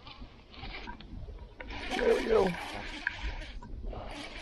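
A man's short wordless vocal exclamation, falling in pitch, about two seconds in, as an angler hooks a fish. It comes over a hissing rush of noise that starts about one and a half seconds in and stops shortly before the end.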